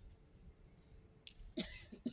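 A person sneezes once, a short sharp burst about one and a half seconds in. Before it there is only the faint hum of a hushed hall.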